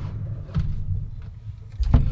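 Refrigerator door and the things inside being handled, heard from inside the fridge: a low rumble throughout, a light knock about half a second in and a sharp knock near the end.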